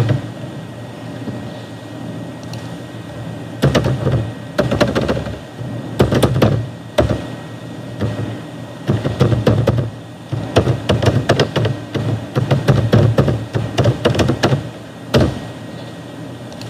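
Computer keyboard typing and clicking in short bursts, picked up close to the microphone, with pauses between the bursts and a sharp single click near the end.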